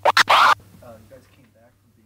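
A short, loud record-scratch sound effect of three or four quick strokes within the first half second, followed by faint speech.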